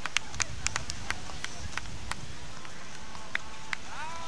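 Beach tennis paddles hitting the ball: a quick run of sharp clicks through the first two seconds, then two more hits near the end, over steady background noise.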